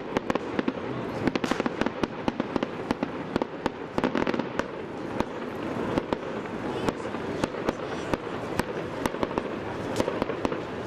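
Aerial fireworks going off: a dense, irregular run of sharp bangs and crackles, several a second, with people talking underneath.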